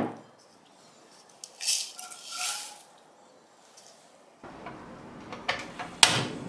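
Stainless-steel saucepan being handled: light metallic clinks and scraping, with a faint ring, about two seconds in. A faint steady hiss follows in the last second and a half.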